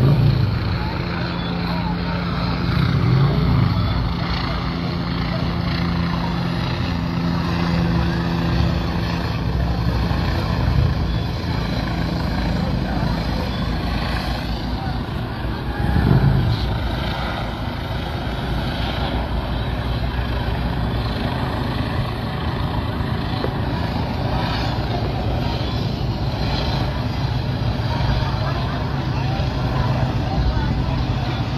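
Steady engine hum, with low droning tones that swell briefly about 3 seconds in and again about 16 seconds in.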